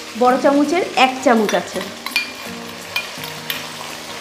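Ground spice paste scraped from a steel bowl into hot oil in a kadai, sizzling as it fries, with a metal spatula scraping and clicking a few times against the bowl and pan. A voice is heard briefly in the first second and a half.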